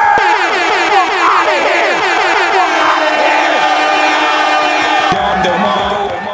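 Battle-rap crowd erupting in reaction to a punchline, many voices shouting and cheering over each other. A steady tone runs underneath and cuts off suddenly about five seconds in.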